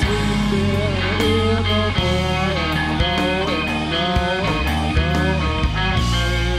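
A live blues-rock band plays an instrumental passage. An electric guitar plays a lead line with bent, sliding notes over bass and drums.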